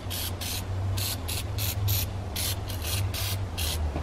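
Aerosol can of Easy-Off Fume Free oven cleaner sprayed onto a wire oven rack in short repeated bursts, about two or three a second. A steady low hum runs underneath.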